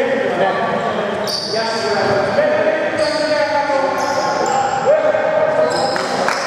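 Echoing sports-hall sound of a basketball game: players' voices and a basketball bouncing on a wooden court.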